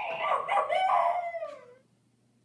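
A long, high-pitched, wavering cry that slides down in pitch and stops near the end.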